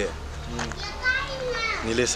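Children's voices chattering and calling in the background, high-pitched and wavering, over a low steady rumble.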